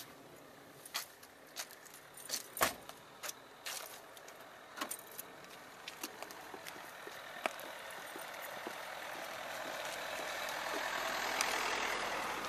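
A car door shut with one heavy thump about two and a half seconds in, among scattered light clicks and jingles like keys. A steady rushing noise then swells, loudest near the end.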